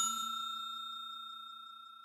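Bell-like ding of a notification-bell sound effect, its ring fading steadily away.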